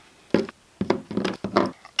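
A few irregular soft knocks and thumps as small rubber RC truck tires on their wheels are handled and set down on a workbench. They start about a third of a second in.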